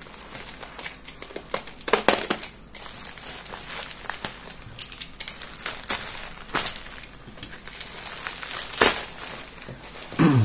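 Plastic mailing bag being cut open with a box cutter and pulled apart by hand: irregular crinkling and crackling rustles, with sharper crackles about 2, 6.5 and 9 seconds in.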